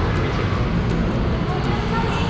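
Hard-shell suitcase's wheels rolling across a polished stone floor: a steady rumble with faint ticks over the tile joints.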